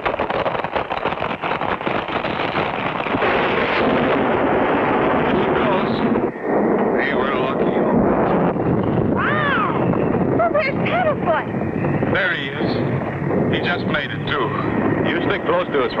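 Rumbling crash of a natural sandstone bridge collapsing, a cartoon sound effect, for about the first six seconds. After it, a run of short pitched sounds that rise and fall.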